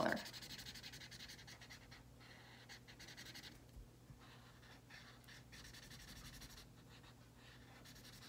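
Felt-tip marker scribbling back and forth on paper as a circle is coloured in: a fast, faint run of scratchy strokes with short pauses.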